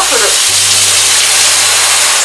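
Small handheld shower head spraying water into a bathtub: a steady, loud hiss of a powerful spray.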